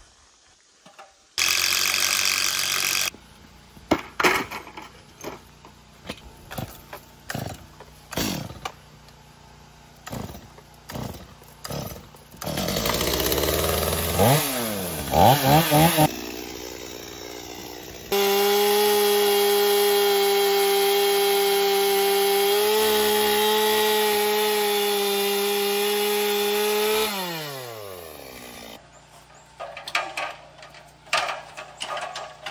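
Gas chainsaw revving up and down in short bursts, then held at full throttle for about nine seconds as it cuts through a board, its pitch falling as it winds down near the end. Before it, a string of sharp knocks and a short burst of noise.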